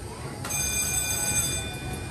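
Shooting-gallery rifle firing, a faint sharp crack about half a second in, followed by a high, steady ringing tone that lasts over a second before stopping.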